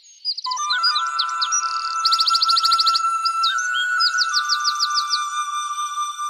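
Songbirds chirping, with quick runs of repeated notes about two and four seconds in, over a steady held high musical note.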